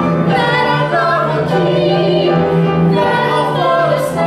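Musical-theatre duet: a man and a woman singing together, with long held notes.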